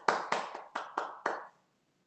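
Hand clapping over a video call: a short, even run of claps, about four a second, that stops abruptly about a second and a half in.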